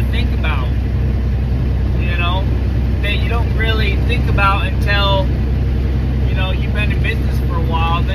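Steady low drone of a truck's engine and road noise heard inside the cab while driving. A man's voice comes in short phrases over it.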